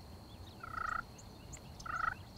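Rio Grande wild turkey gobbler gobbling twice, a short rattling gobble about half a second in and another near the end.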